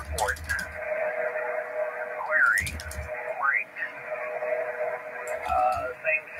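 Single-sideband HF amateur radio receiver audio, narrow and tinny, with two steady heterodyne tones and a few sliding whistles over the band noise, and a faint voice on the net.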